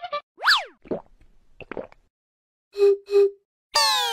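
Cartoon comedy sound effects dubbed over the scene: a quick falling 'boing' glide about half a second in, a few small pitched blips, two short honk-like beeps about three seconds in, then a loud descending sweep starting just before the end.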